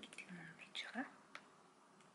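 A woman whispering softly to herself in short bits during the first second, with a single sharp key click just before the middle.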